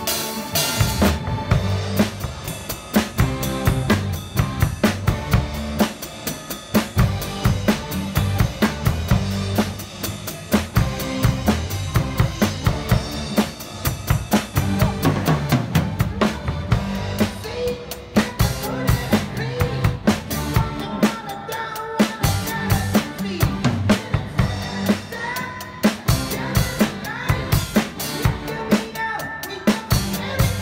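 Acoustic drum kit (bass drum, snare, toms and cymbals) played in a fast, busy groove along to a backing song.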